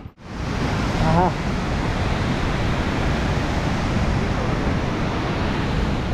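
Steady rushing wind noise on the microphone of a camera riding on a moving motorcycle.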